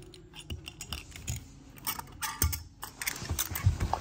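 Small toy cars being handled and pushed across carpet, giving scattered light clicks and taps, with a few soft knocks in the second half.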